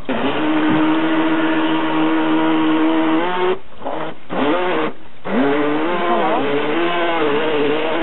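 Battery-powered electric motor of a Fish Fun Co. Bass Pro RC fishing boat running at a steady pitch for about three seconds, cutting out twice briefly, then running again with its pitch rising and falling as the throttle changes.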